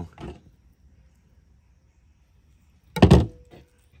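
A single short, loud thump on a plastic cutting board about three seconds in, after a near-quiet pause: fish or knife being handled on the board.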